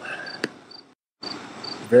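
Cricket-like insect chirping: short high chirps repeating every fraction of a second, with a sharp click about half a second in. The sound cuts out completely for a moment about a second in, and the chirping returns after the gap.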